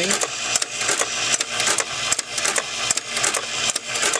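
Automatic wire cutter running as it feeds and cuts 22-gauge brass reed wire: a steady mechanical whir with a regular run of sharp clicks from the cutting action.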